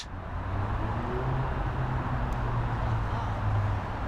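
Road traffic: a low, steady engine hum of motor vehicles, swelling slightly and then easing.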